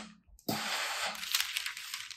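Parchment paper rustling and crinkling as it is lifted and shifted off the ironing surface, starting about half a second in as a rough, crackly noise.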